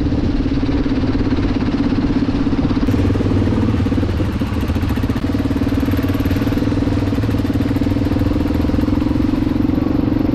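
Enduro motorcycle engine running at a steady, even speed under way, with its steady drone holding through the whole stretch.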